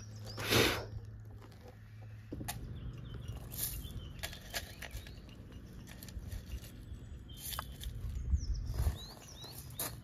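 Small birds chirping now and then over a steady outdoor background rumble. There is a loud rush of air on the microphone about half a second in, and scattered light clicks.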